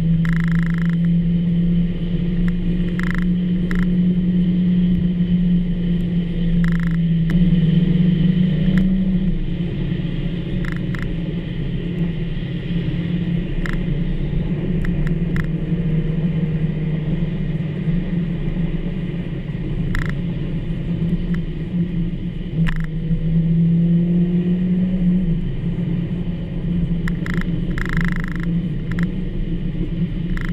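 SEAT Ibiza's engine droning steadily inside the cabin at highway speed, over tyre noise from the wet road. The drone's pitch creeps up and drops back twice, about nine and twenty-five seconds in.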